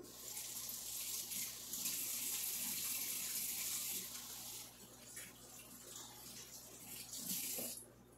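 Kitchen tap running into the sink while hands are washed under it. The water is loudest for about the first half, then runs lower, with a short louder spell near the end.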